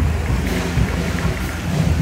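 Wind buffeting the microphone of a handheld phone: an uneven low rumble with a faint hiss over it.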